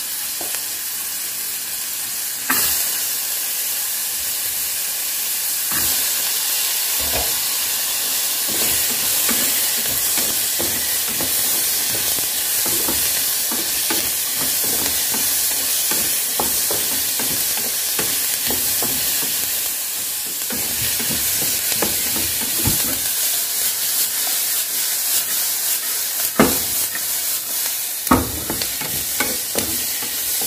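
Chopped onions, carrots and green beans sautéing in hot oil in a non-stick pan, a steady sizzle. A wooden spatula stirs them, with frequent knocks and scrapes against the pan and a few louder knocks near the end.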